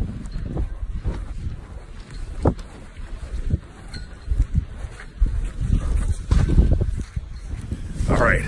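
Phone microphone muffled against a fabric hoodie: irregular rubbing and handling noise, with wind on the microphone.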